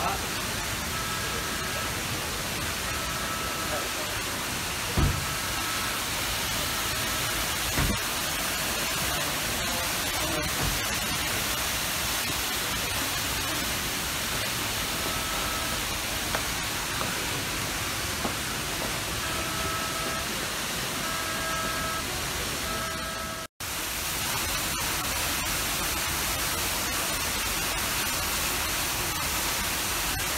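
A steady hiss of ambient noise with faint background voices. Two soft thumps come about five and eight seconds in, and the sound cuts out for an instant about two-thirds of the way through.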